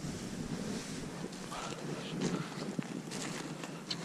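Wind buffeting the microphone, with rustling of a jacket close to it and a few light clicks.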